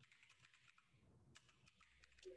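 Faint keystrokes on a computer keyboard as text is typed, in two short runs of quick clicks.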